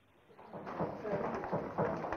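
Near silence, then about half a second in, a hubbub of many people talking at once in a waiting room rises and carries on, with no single voice standing out.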